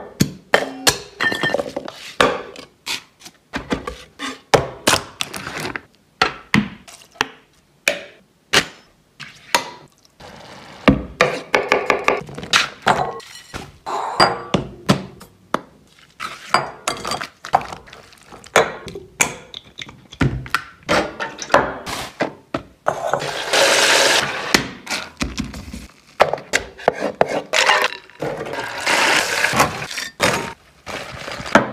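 A rapid run of close-miked kitchen food-prep sounds: many short knocks, taps and clinks of utensils on glass bowls, metal and boards, with pouring and mixing between. Two longer noisy stretches of a second or two come in the second half.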